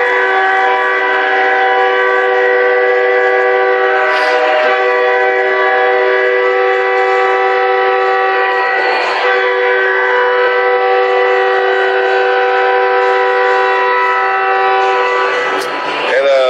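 Hockey arena goal horn sounding one long, loud, steady chord of several tones for about fifteen seconds, signalling a home-team goal. It stops shortly before the end.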